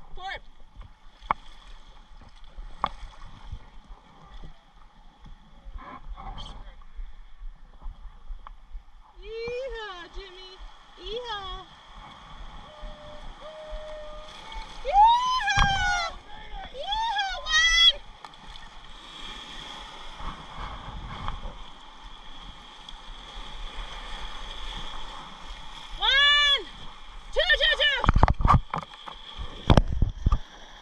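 River water rushing and splashing around an inflatable raft running small rapids. Voices aboard let out high whoops that rise and fall, in three rounds: about a third of the way in, midway, and near the end.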